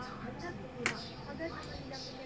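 Indistinct background voices, with one sharp click a little under a second in.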